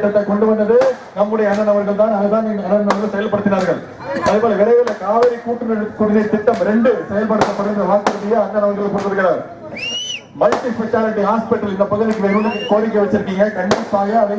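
A man making a speech in Tamil into a microphone. Many sharp cracks are scattered through it, and a short rising whistle sounds about ten seconds in.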